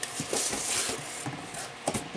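Handling noises: rustling and scraping, loudest in the first second, with a sharp knock near the end.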